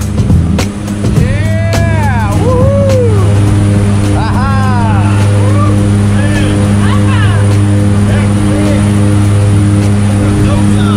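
A skydiving jump plane's engine and propeller drone steadily at full power through the takeoff run and climb, heard from inside the cabin.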